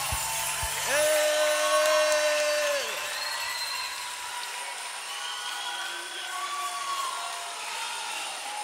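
A lull in live worship music: the band drops out and voices call out across a large hall. A strong held call comes about a second in, rising at its start and falling away about two seconds later, followed by several fainter overlapping calls.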